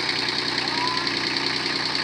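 Kubota B1600 compact tractor's small three-cylinder diesel engine idling steadily.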